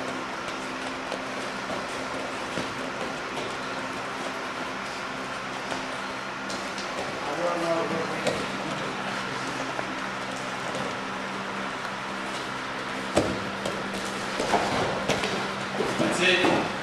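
Steady hum and hiss of room noise under faint, indistinct voices, with the scuffle of two grapplers on a mat. About thirteen seconds in there is a single sharp thump, the loudest sound.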